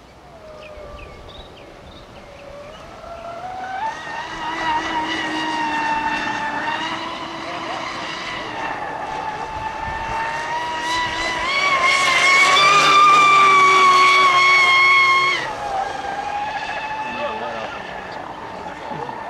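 Brushless electric motor and propeller drive of a fast radio-controlled racing catamaran whining at speed. The whine builds in pitch and loudness over several seconds and is loudest about two-thirds of the way through. It then drops off abruptly, leaving a quieter, lower whine.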